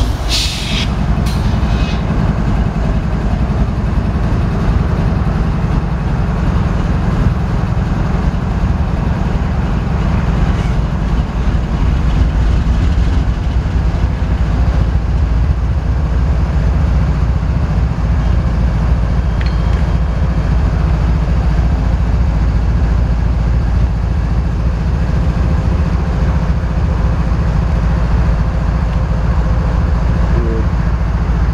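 GE ES44DC diesel-electric locomotive's V12 engine running steadily while the locomotive stands still: a loud, deep, even drone.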